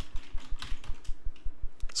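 Typing on a computer keyboard: a quick, uneven run of key clicks as a line of text is typed.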